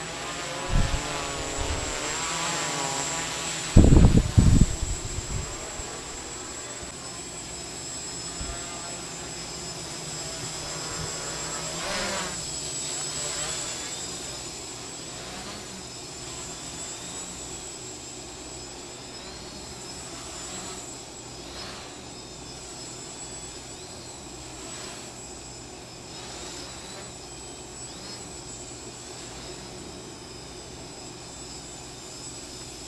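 X525 quadcopter's electric motors and carbon fiber propellers buzzing, the pitch rising and falling as the throttle changes. There are loud thumps about a second in and again around four seconds in. After that the buzz grows fainter and steadier.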